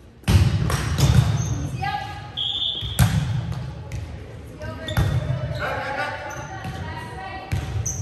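Volleyball being played in a gym: sharp slaps of hands and arms on the ball every second or two through a rally, ringing in the hall, with players' voices calling between the hits.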